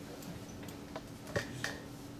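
A few short, sharp clicks over a steady faint room hum in a meeting room, the loudest about a second and a half in.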